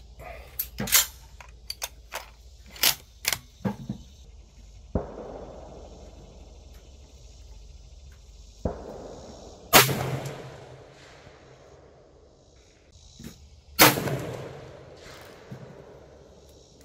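Rifle shots, among them a 6.5 rifle firing a 42.8-grain test load: two loud shots about ten and fourteen seconds in, each with a long echoing tail, and two fainter shots around five and nine seconds. A series of sharp clicks and knocks comes in the first four seconds.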